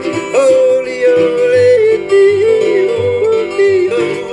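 A man yodeling over a strummed ukulele: long held notes that flip abruptly down and back up in pitch.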